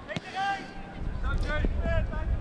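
Distant raised voices of footballers shouting calls on the pitch, heard faintly twice. A low wind rumble on the microphone builds from about halfway in.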